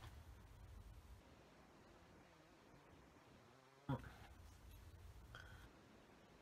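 Near silence: faint room tone, broken about four seconds in by one brief, short pitched sound.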